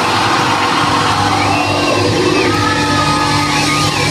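A live rock band playing loud on electric guitars and drums, with pitched lines gliding up and down through the dense sound.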